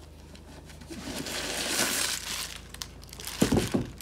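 Tissue paper rustling and crinkling as it is pulled from inside a new sneaker and handled, swelling over the first couple of seconds, with a few short low thumps near the end.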